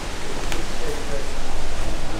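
Steady hiss of background noise with a low rumble underneath, and a faint click about half a second in.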